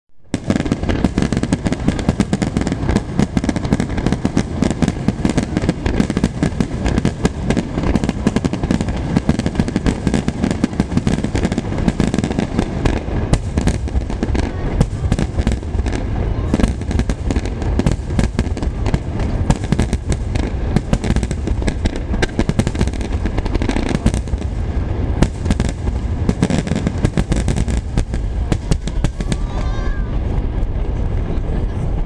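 Aerial Niagara fireworks finale: shells launched and bursting one after another in rapid, unbroken succession, a dense stream of bangs and crackles with no pause.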